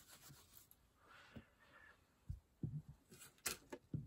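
Faint handling noise of a cloth wipe being moved on a craft mat: a brief soft rustle a little over a second in, then several soft low thumps in the second half.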